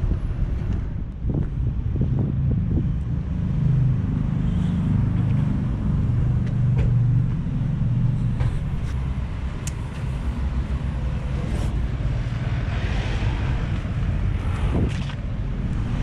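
Steady low rumble of city street traffic, with a vehicle swishing past about three-quarters of the way through.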